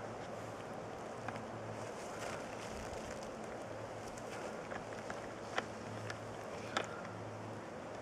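Quiet outdoor background: a steady hiss with a faint low hum, broken by a couple of faint ticks late on.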